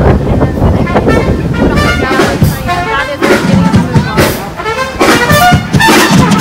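Street band playing, with trumpets carrying held pitched notes, over street noise and voices.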